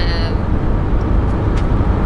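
Steady low rumble of a car heard from inside its cabin: engine and road noise.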